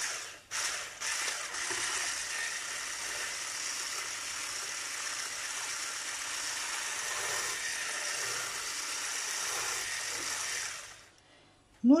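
Electric hand blender with a whisk attachment running on its lowest speed, whisking a thin kefir and egg mixture in a tall beaker. A steady whir that stutters briefly as it starts, then stops about eleven seconds in.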